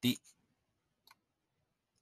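Dead silence broken by a brief voice-like mouth noise right at the start and a faint click about a second in.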